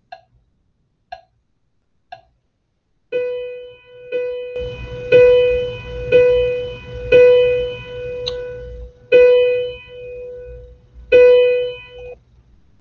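Sight Reading Factory's synthesized piano-like tone playing the exercise rhythm on one repeated pitch at 60 beats per minute, notes about a second apart with some held longer. It starts about three seconds in, after three soft ticks a second apart.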